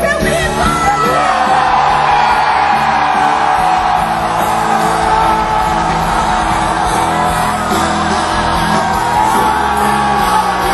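Loud live worship band music with singing, and crowd voices yelling and whooping over it, recorded from amid a large concert audience.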